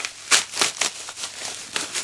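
Packaging crinkling and rustling in a string of short, sharp bursts as it is handled and opened.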